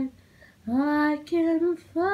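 A solo female voice singing with no accompaniment. After a short silent gap, a note slides up into a held pitch about two-thirds of a second in, then comes a brief break and a shorter, wavering note.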